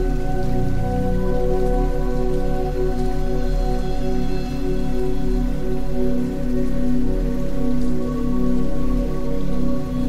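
Slow ambient sleep music of sustained, overlapping drone tones, with a steady rain sound underneath.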